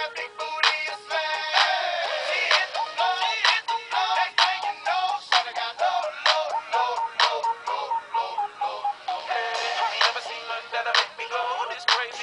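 Pop music with auto-tuned singing over a steady beat, played through the small built-in speaker of an i-Dog Amp'd music toy. It sounds thin, with almost no bass.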